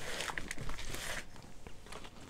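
Dry peat potting soil rustling as it tips and crumbles out of a plastic plant pot into a plastic tub, loudest for about the first second, followed by light scraping and small knocks of the plastic.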